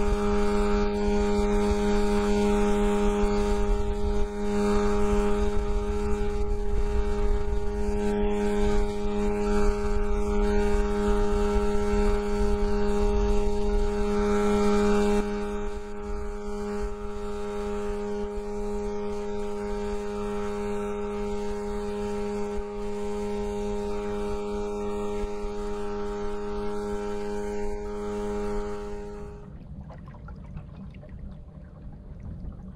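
A boat's outboard motor running at a steady pitch over a low rumble of wind and hull noise. It drops a little in level about halfway through and cuts off just before the end.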